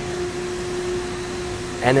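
Hydraulic power unit of a FAMAR four-roll plate bending machine running after being switched on: a steady, even hum with one constant tone.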